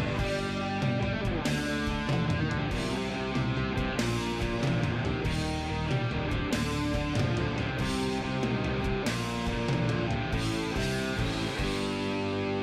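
Music with guitar playing steadily, with a recurring beat.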